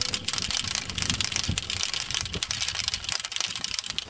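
Dense, steady crackling rustle made up of many small clicks at every pitch, of the kind that wind or handling makes on a camcorder's microphone.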